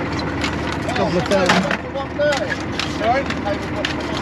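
King scallop shells clacking against one another as they are picked one by one from a pile on a boat deck and dropped into a plastic bucket, a quick run of sharp clicks. Voices talk in the background over a steady low engine hum.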